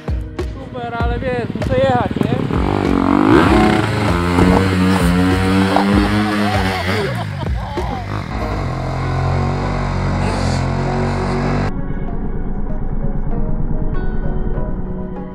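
A dirt bike's engine revs up close by and then runs at steady high revs, with a woman's voice over it at first. The sound cuts off suddenly about twelve seconds in.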